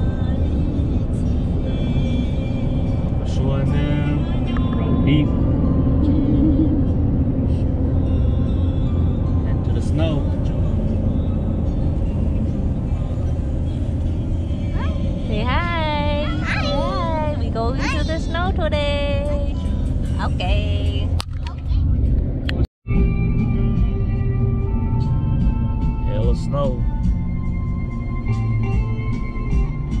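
Steady low road rumble of a moving car heard from inside the cabin, mixed with background music. About halfway through, children's high voices call out for a few seconds. The sound drops out for an instant about three-quarters of the way in.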